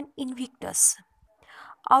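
Speech only: a woman's voice saying a few soft words with a sharp 's' hiss, then starting to read aloud just before the end.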